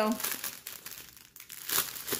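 Clear plastic bags crinkling as hands pull small packets of diamond painting drills out of their outer bag, with a sharper crinkle near the end.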